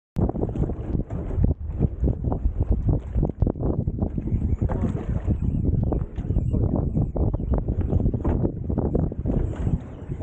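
Wind rumbling and buffeting on the microphone aboard a small fishing boat at sea, in irregular gusts with frequent sharp buffets.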